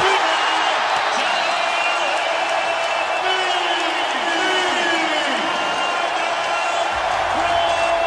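Basketball arena crowd cheering loudly and steadily, with scattered shouts and whoops, for a made three-pointer.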